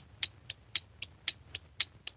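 Clock ticking sound effect: quick, even ticks at about four a second, marking time passing.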